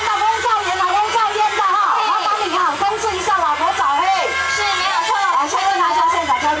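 A person talking over the stage loudspeakers, continuous speech with no music.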